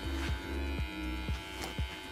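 Electric hair clipper running with a low, steady buzzing hum.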